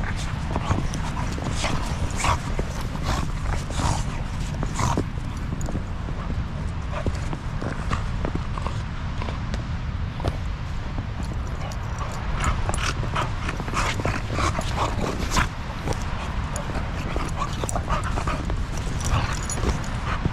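A shar pei puppy playing in snow close to the microphone: many short, irregular crunches and dog noises as it digs and noses through the snow, over a steady low rumble of wind on the microphone.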